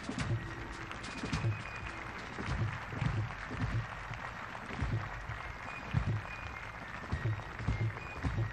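A crowd applauding steadily while a fife and drum corps plays, with bass drum beats sounding through the clapping.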